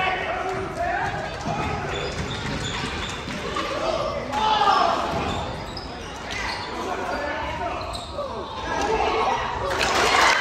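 Basketball being dribbled on a hardwood gym floor during live play, with sneakers squeaking and players' and spectators' voices echoing in the gym.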